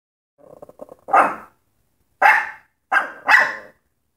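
Miniature schnauzer barking at something outside the window: a quiet low grumble, then four sharp barks, the last two close together.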